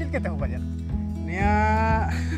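A man singing over a music backing track with a steady bass. A few quick sung syllables come first, then one long held note through the second half.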